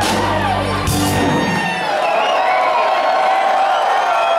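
A live rock band's final chord and cymbal crash ring out and stop about a second and a half in. A concert crowd cheers and whoops over and after it.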